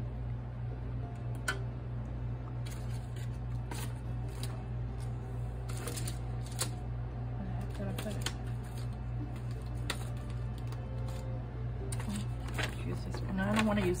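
Steady low hum of a room air conditioner, with scattered light clicks and rustles from crafting materials being handled on the desk.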